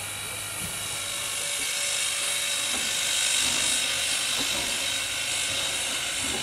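Reading & Northern 425, a 4-6-2 Pacific steam locomotive, hissing steam steadily, growing louder over the first three seconds, with a faint steady high whine underneath.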